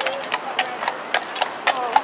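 Hooves of a harnessed carriage horse clip-clopping on paved road at a walk, a few sharp strikes a second.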